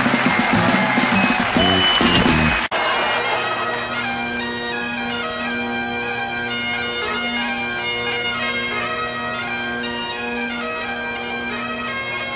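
A loud noisy stretch cuts off suddenly about two and a half seconds in. Then Great Highland bagpipes play a tune over their steady drones.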